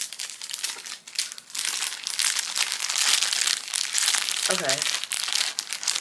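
Clear plastic packaging sleeves crinkling as several packaged bracelets are handled and gathered together, lighter at first and dense from about a second and a half in.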